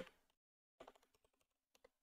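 Faint computer keyboard keystrokes, a few soft clicks in two small clusters, in otherwise near silence.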